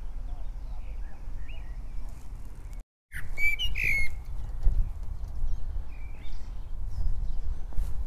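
Birds chirping and calling outdoors, faint at first, then a cluster of louder, quick gliding calls just after the sound cuts out briefly about three seconds in, over a steady low rumble.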